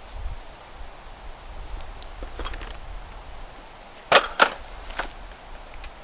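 Rolled-up light-gauge aluminum camp tabletop and folded legs being handled and laid together, the metal giving a few light clicks and then two sharp clacks close together about four seconds in, with another about a second later.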